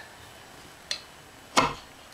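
A faint click about a second in, then a sharper, louder knock shortly after: the small handling sounds of a hand picking up and working tools or parts.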